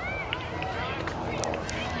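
Distant voices of people calling and chatting around a baseball field, over a steady low rumble, with a few faint sharp clicks about a second and a half in.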